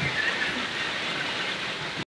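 A steady, even hiss like falling rain.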